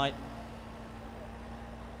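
Steady low background hum with a faint constant tone in it, and no distinct sounds standing out.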